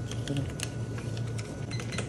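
Light, irregular clicks and taps of a cashier working a convenience-store register while handling cash, about eight in two seconds, over a steady low hum.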